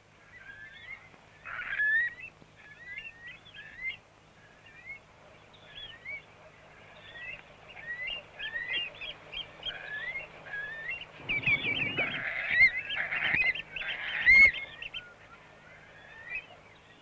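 A flock of shorebirds calling on a tidal flat: many short, rising calls overlapping, getting busier and louder in the last few seconds.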